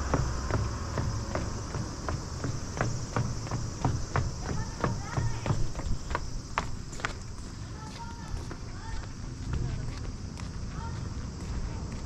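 Quick footsteps of a person running down stairs and along pavement, about three strides a second, thinning out after about seven seconds. A steady low rumble lies under them.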